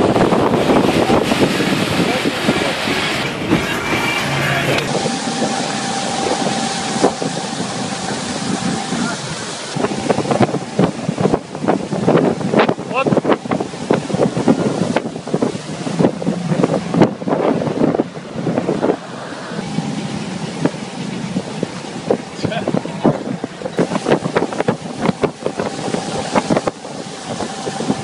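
Motorboat under way at speed: its engine runs steadily while the wake water churns behind the stern, and wind buffets the microphone in gusts.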